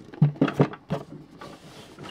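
A sealed cardboard G.I. Joe Cobra Piranha toy box being handled and set down on a cloth-covered table. A few quick knocks and rattles come in the first second, from the box and the loose parts inside it, then quieter handling.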